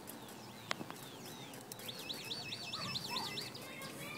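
A bird singing faintly, with a quick run of about eight repeated rising-and-falling high notes near the middle. There is a single sharp click earlier on.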